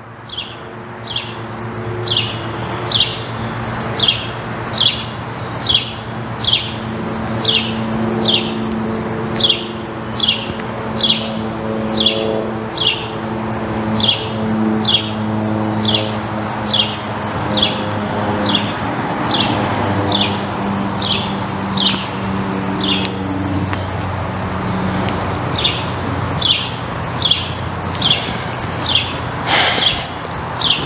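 A songbird repeating one short, falling chirp over and over, about one and a half times a second, with a brief pause near the end. Low steady tones run underneath.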